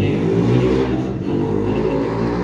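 A man's voice speaking into a table microphone over a steady low rumble.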